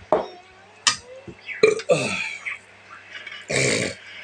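A man burping and making short throat noises while eating: several brief sounds, the longest and roughest near the end.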